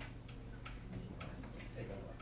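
Several light, sharp clicks at irregular intervals over a steady low hum.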